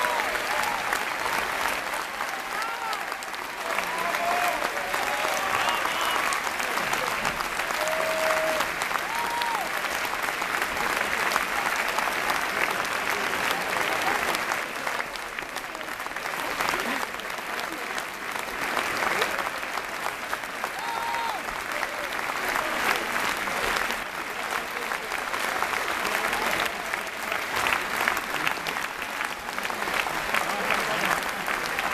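Opera audience applauding: dense, steady clapping that fills the hall, with a few brief voices shouting over it.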